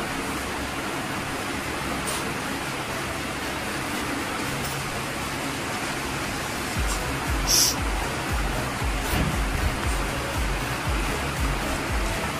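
Background music over a steady hiss, with a low, evenly repeating beat coming in about seven seconds in. A few brief, crisp scrapes of a knife cutting bread crusts on a wooden board sound over it.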